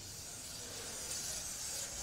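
Chalk scraping on a chalkboard as a long curved line is drawn in one unbroken stroke: a steady hissing rub.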